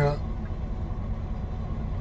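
Steady low rumble of a semi-truck's diesel engine idling, heard from inside the cab.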